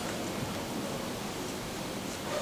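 Steady hiss of room tone with no distinct sound in it.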